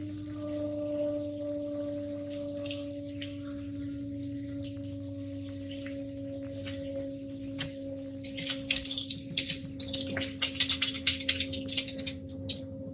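A steady low droning hum with a higher overtone, sinking very slightly in pitch: one of the unexplained 'strange noises' reported worldwide in 2017. From about two-thirds of the way in, a rapid, irregular run of sharp crackling clicks comes in, louder than the hum.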